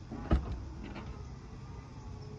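Tesla Model 3 trunk latch releasing with a sharp clunk, followed by a faint steady whirr as the trunk lid lifts open.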